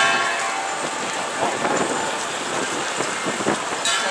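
Two short horn blasts, one at the very start and one near the end, over the steady noise of a walking crowd on a road.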